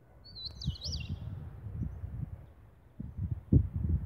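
A bird gives one short, warbling chirp about half a second in, over an irregular low rumble that grows louder near the end.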